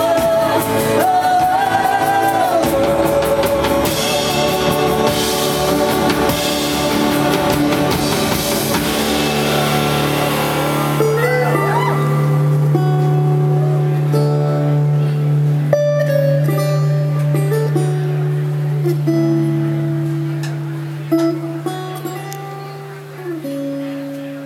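Live rock band with lead singing, drums and acoustic guitar. About ten seconds in the drums drop out, leaving a held low note under softer melody lines, and the music fades near the end.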